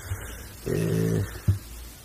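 A man's voice holding one drawn-out word or vowel for about half a second, spoken into a lectern microphone, then a short low thump about one and a half seconds in.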